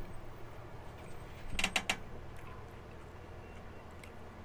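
Someone chewing a Nashville hot chicken wing: quiet eating sounds, with a short cluster of three crackly clicks about one and a half seconds in, over a low steady hum.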